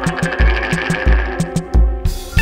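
Live band playing: drums with a regular, heavy low beat and sharp cymbal ticks, under electric bass and sustained chords.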